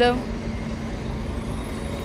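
City street traffic noise: a steady low rumble of road vehicles, with a faint steady hum under it.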